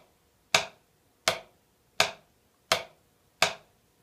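5A wooden drumsticks striking a drum practice pad in alternating single strokes, right then left, in an even, unhurried rhythm: five taps, each short and sharp, at about one and a half a second. It is a beginner's rebound exercise, each stroke played from the same height to give the same sound.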